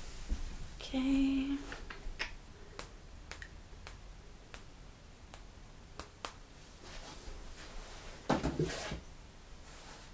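Handling noise: a string of sharp, separate clicks about every half second, with a short pitched hum about a second in and a burst of rustling near the end.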